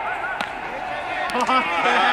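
Men's voices calling out on a baseball field, with a sharp knock about half a second in, typical of a ball hitting a glove or bat during fielding practice.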